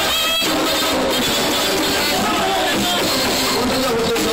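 Live bachata band playing at full volume, electric guitar lines over percussion with the steady scrape of a güira.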